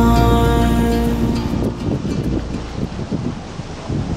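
A song's closing chord fades out over the first second and a half. It gives way to wind buffeting the microphone and waves washing past a sailboat under way in choppy water.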